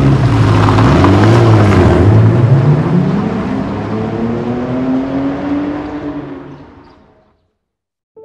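Car engine revving and accelerating, its pitch climbing steadily, then fading away about seven seconds in.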